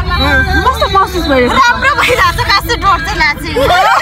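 Women talking over one another, with a steady low rumble of a moving vehicle underneath.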